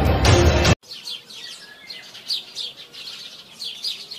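Loud background music that cuts off abruptly under a second in, followed by birds chirping, many quick high chirps in a row.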